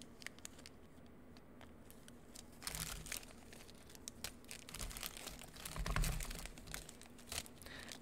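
Small plastic bags of press-on nail tips crinkling and rustling as they are handled and sorted, with scattered light clicks, starting about two and a half seconds in.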